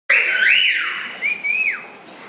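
High whistling in two gliding phrases: a tone rises and then holds, and a second phrase about a second in rises briefly and then falls away.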